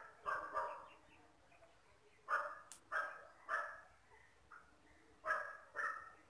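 A dog barking, a few short barks at a time in three groups of two or three.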